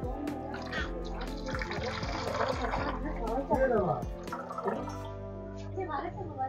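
Water poured into a hanging aquarium filter's plastic chamber, splashing and gurgling for the first few seconds, over music and voices in the background.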